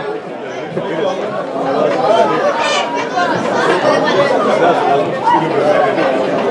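Spectators chattering, several voices talking over one another without a break.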